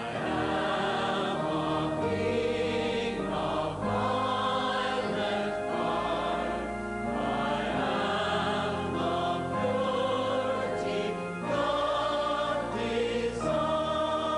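A choir singing a slow hymn in long held notes over sustained organ chords that change every couple of seconds.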